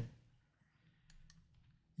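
Near silence: room tone, with a few faint clicks just past the middle.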